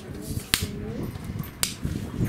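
Two sharp clicks about a second apart from a camera tripod being handled and adjusted, the first the louder, with a faint voice in between.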